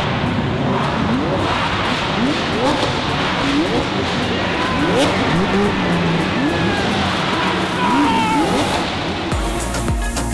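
Supercar engines revving, their pitch climbing and dropping again and again over a noisy rumble. A music track with a steady beat comes in near the end.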